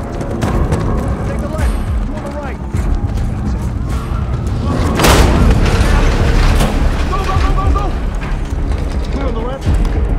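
Film action soundtrack: a tense score with heavy low rumble, scattered sharp clicks and knocks, and a loud boom about five seconds in.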